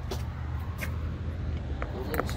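Steady low rumble on the microphone, with a few light clicks from a phone on a selfie stick being handled and moved.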